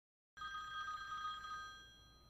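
A mobile phone ringing: a steady electronic ring of several high pitches that starts about a third of a second in and fades out near the end.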